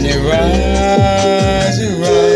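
A man's voice holding one long sung note that drops away near the end, over backing music with falling low sweeps about every half second.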